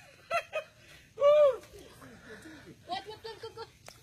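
People's voices: short exclamations, a louder drawn-out call about a second in, and a brief burst of laughter near the end.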